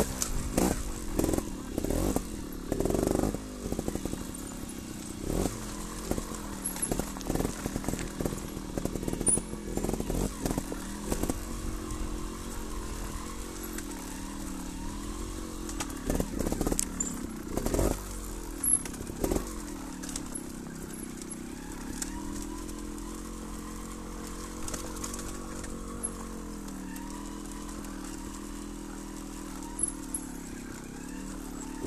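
Trials motorcycle engine ridden slowly over loose rocks, the revs rising and falling with the throttle, with sharp knocks and clatter over the stones through the first half. Later it runs at low, steadier revs with gentle dips.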